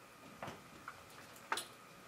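A few faint, sharp clicks at uneven intervals in a quiet room, the loudest about a second and a half in.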